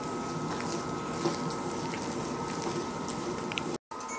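Hands mixing thick urad dal vada batter with chopped onion and green chilli in a bowl: soft, wet squishing and small clicks over a steady faint hum. The sound drops out briefly near the end.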